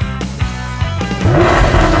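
Rock intro music with a steady, driving beat and guitar. About a second in, a louder, rushing noisy swell with sweeping low tones rises over the music.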